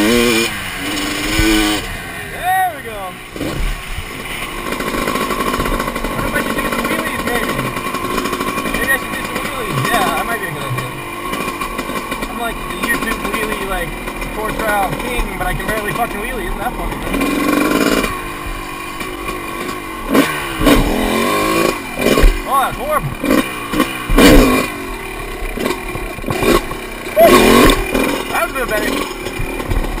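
Two-stroke dirt bike engine running under the rider, its pitch climbing and falling with the throttle in the first seconds, then steadier. In the second half come a run of sharp, loud knocks and gusts from wind and bumps hitting the helmet-mounted microphone.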